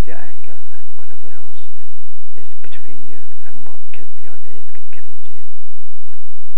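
Only speech: a man talking in short phrases with brief pauses between them.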